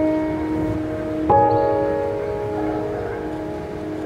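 Bell-like struck tones ringing out: a new strike about a second in, sounding over the slow decay of an earlier one, each note sustaining and fading gradually.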